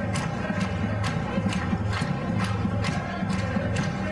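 Batucada drum group playing a fast, steady samba rhythm on snare drums and metal barrel drums, with continuous deep drumming underneath and sharp accented strikes repeating evenly through it.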